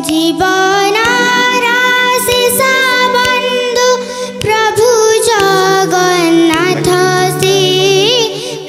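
A young girl singing solo into a microphone, holding long notes with a wavering, ornamented pitch. Steady low tones sound underneath the voice and change pitch about two-thirds of the way through.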